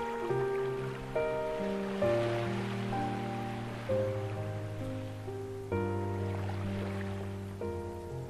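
Slow ambient piano, with soft chords and single notes struck every second or two and left to ring, over ocean waves that swell and fade twice.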